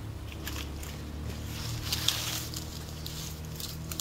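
Hands pulling and handling weeds, grass and dry stalks at ground level: rustling and crackling of leaves and stems with a few small snaps, busiest around the middle.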